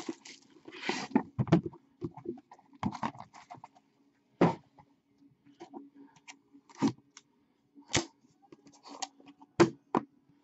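A utility knife slitting the shrink wrap on a Panini National Treasures football card box, then the plastic wrap crinkling and tearing off and the cardboard box being handled. There are scattered rustles and clicks with a few sharper snaps and taps, over a faint steady hum.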